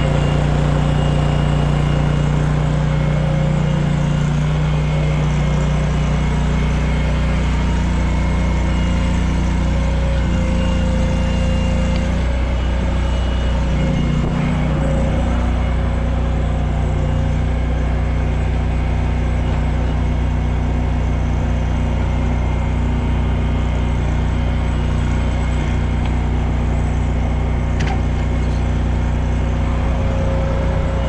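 Engine idling steadily, most likely the service truck's engine running to power the crane that holds the wheel hub; its tone shifts slightly about halfway through.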